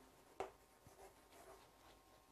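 Chalk writing on a chalkboard: faint scratching strokes, with one sharper tap of the chalk about half a second in.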